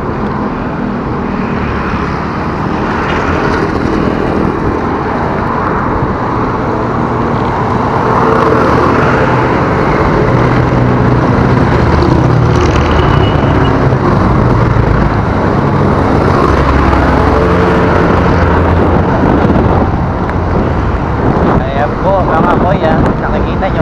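Steady rush of wind and road noise on a bicycle-mounted action camera riding downhill, with motor traffic running alongside; it gets a little louder about eight seconds in.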